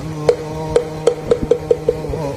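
Wooden fish (moktak) struck seven times in a roll that speeds up, each knock hollow and briefly ringing, marking the close of a Korean Buddhist chant. A steady low held note sounds beneath the knocks.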